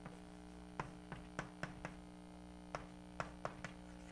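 Chalk writing on a blackboard: a string of short, sharp taps and clicks as the strokes of an equation go down, about nine over the last three seconds, over a steady electrical hum.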